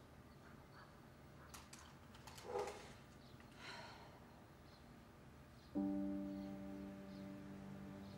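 Quiet room tone with a few faint clicks and a short soft sound about two and a half seconds in, then a sustained low chord of background score enters suddenly near six seconds and holds, slowly fading.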